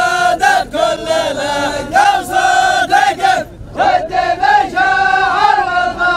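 A group of men chanting together in the Dhofari hbout (habbut) style, holding long notes that bend up and down at their ends. The chant breaks off briefly about halfway through, then resumes.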